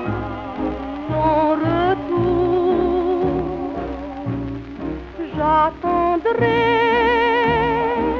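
Instrumental passage of a 1938 French popular song recording played from a 78 rpm shellac record: a wavering vibrato melody over an even bass beat of about two notes a second, thinning briefly a little past the middle and then swelling fuller. The sound is narrow and dull at the top, as old shellac recordings are.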